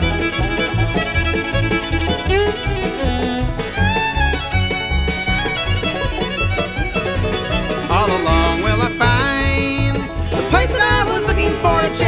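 Acoustic bluegrass-style band playing an instrumental break: a fiddle carries the melody with sliding notes over strummed acoustic guitar and a steady low bass pulse.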